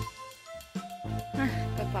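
Music with a steady bass line under held melody notes, dipping briefly about half a second in.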